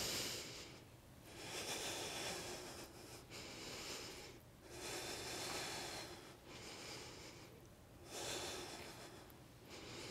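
A woman breathing slowly and steadily in and out while holding a yoga twist, each breath lasting one to two seconds.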